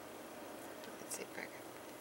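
A woman's soft, whispered speech about a second in, over a faint steady hiss.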